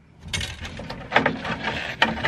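Leather shift boot and its trim ring rubbing and rustling against the center console as they are pried up and lifted off the shifter, with a few small clicks, starting about a third of a second in.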